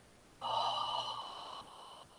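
A woman's long exasperated groan with open mouth and head thrown back, starting suddenly about half a second in and trailing off in steps toward the end, out of frustration at a fiddly drawn-thread step that went wrong.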